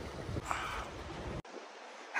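Sea-front wind rumbling on the microphone over waves washing against the rocks. It drops suddenly to a quieter hiss about a second and a half in.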